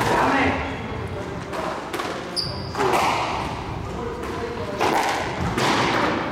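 Squash ball struck by rackets and hitting the court walls and floor: a series of sharp, echoing thuds in the hard-walled court, with a brief high shoe squeak on the court floor about two seconds in.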